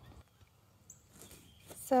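Near silence outdoors, broken by one brief high chirp about a second in. A woman's voice starts speaking near the end.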